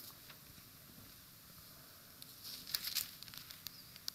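Faint rustling and soft crackles of thin Bible pages being leafed through, starting about two seconds in after near silence.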